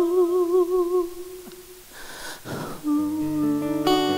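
A sustained vocal note with vibrato fades out, followed by a brief quiet moment. About three seconds in, chromatic harmonica and acoustic guitar come in with an instrumental passage.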